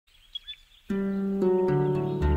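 Gentle harp music: plucked notes enter about a second in and ring on, with new notes joining. Before it, a few faint bird chirps.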